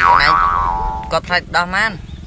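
A comedic sound effect: a quick upward pitch glide followed by a ringing tone that fades out over about a second, then a voice talking.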